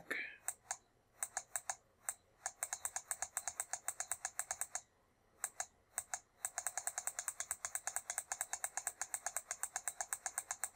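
Computer keyboard key tapped over and over, stepping a graphing-calculator trace cursor back along the curve. The clicks are irregular at first, pause briefly near the middle, then run fast and even at about six or seven a second.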